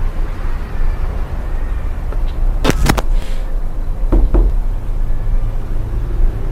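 A steady low rumble with a few sharp knocks, a pair about three seconds in and another pair just after four seconds.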